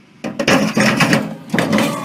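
A man's fall off an old hand-cranked clothes wringer: sharp knocks and a clatter a quarter second in as the wringer gives way under him, followed by a loud, rough stretch of noise.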